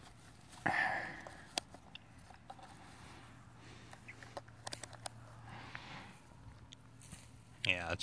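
Small sharp clicks and handling noise as the rotary selector dial of a handheld digital multimeter is turned to a current range, with a short rustle about a second in and a cluster of clicks midway.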